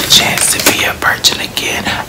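A man speaking in a whisper.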